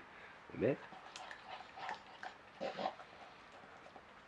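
A dog's soft grunt-like vocal sounds as it takes a treat from a hand: a rising one about half a second in and another near three seconds, with small mouth clicks between them. It is at most a little 'nam nam' whisper, the kind of noise this dog sometimes makes loudly when fed.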